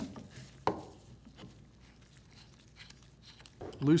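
A couple of short metallic clicks from a wrench working the stuffing box nut loose on a 2-inch Kimray treater valve: one right at the start and one just under a second in, with a few faint ticks after.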